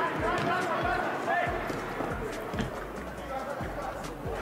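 Live sound of a futsal match on an outdoor court: players calling out faintly, with scattered footsteps and ball touches.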